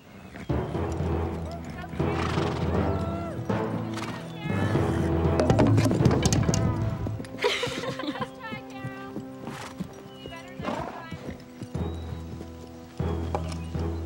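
Background score music with sustained notes, over horse hoofbeats and a horse whinnying.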